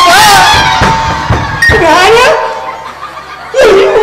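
Amplified voices over a stage PA in a large hall: a drawn-out vocal exclamation at the start and another sliding call about two seconds in, then a quieter stretch before loud sound returns near the end.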